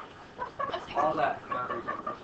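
Faint background voices of students talking in short, broken snatches, well below the teacher's voice.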